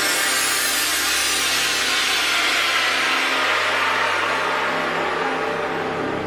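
Electronic whoosh in a title theme: a long, loud hiss that sweeps down in pitch over a few seconds. The sustained bass notes under it fade away about halfway through.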